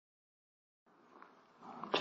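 Silence for about the first second, then the faint hiss of an old recorded talk fading in, growing slightly louder just before a man's voice begins.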